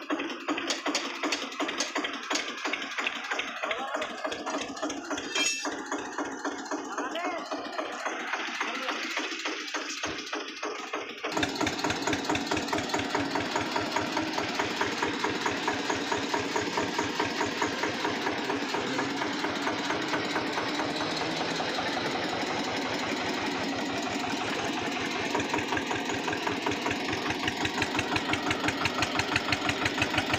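Eicher tractor's diesel engine running with a steady, even beat of firing pulses. The sound is thin at first and turns fuller and deeper about eleven seconds in, and near the end the beat grows louder.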